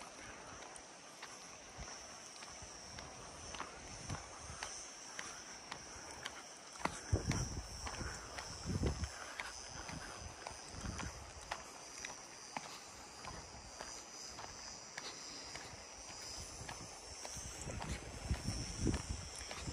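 Footsteps crunching on a dry dirt and gravel trail, over a steady high-pitched drone of cicadas. A few low thuds stand out about seven to nine seconds in.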